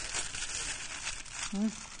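Baking paper crinkling steadily as gloved hands fold and wrap it tightly around a rolled beef tenderloin.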